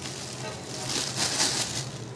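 Thin plastic bag crinkling and rustling as gloved hands handle it and fill it with salted, spiced sardines. The crackle is loudest about a second in.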